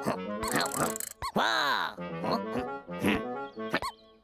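Cartoon soundtrack: playful background music mixed with a character's wordless grunts and murmurs. It is broken by short sharp sound-effect hits, with a swoop in pitch down and back up about a second and a half in.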